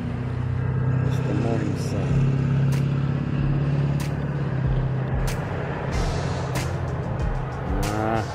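A motor vehicle engine running with a steady low hum. Music plays with a regular click-like beat about every second and a half.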